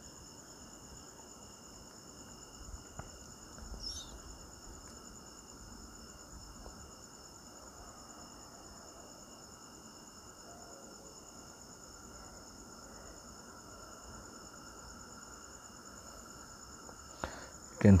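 Faint background noise with several steady high-pitched tones running throughout, and a brief faint chirp about four seconds in.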